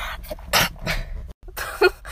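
A woman sneezing: a breathy wind-up, then the sneeze itself, loudest near the end.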